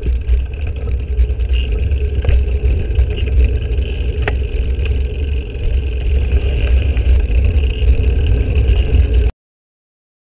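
Wind buffeting the microphone of a bicycle-mounted camera, with a steady deep rumble and road noise from the moving bike and a couple of sharp ticks. The sound cuts off suddenly about nine seconds in.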